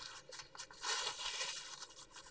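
Paper tissue rustling and rubbing as it wipes hand cream off a photometer probe, soft and uneven.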